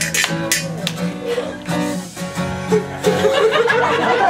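A guitar strummed to give a rhythm for a rap, with a few quick sharp strums at the start and then ringing chords.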